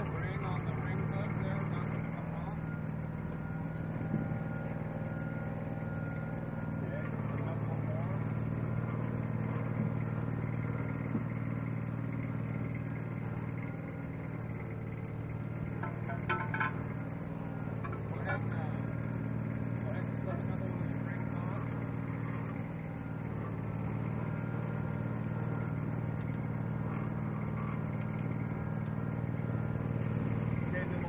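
Fishing boat's engine running steadily, a constant low hum.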